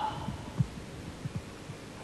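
A few soft, low thumps at uneven spacing over a steady hiss.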